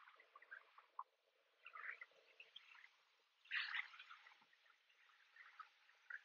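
Near silence: faint background tone with a few soft, scattered chirps and a short faint hiss about three and a half seconds in.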